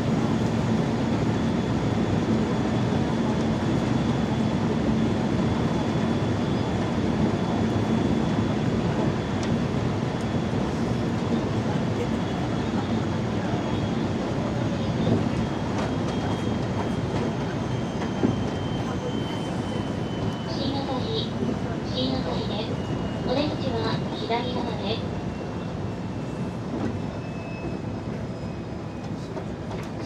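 A JR West 223 series electric multiple unit running, heard from inside the front cab: a steady rumble of wheels on rail and running gear. From about halfway there is a thin whine from the traction motors that slowly falls in pitch, and the overall sound eases toward the end as the train slows.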